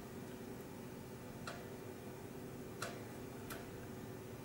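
Quiet room tone with a faint steady hum, broken by three faint, sharp clicks: about one and a half, two and three-quarters, and three and a half seconds in.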